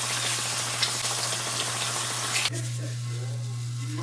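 Kitchen faucet running water into a stainless-steel sink as potatoes are rinsed and rubbed by hand; the rushing water cuts off suddenly about two and a half seconds in. A steady low hum sits underneath.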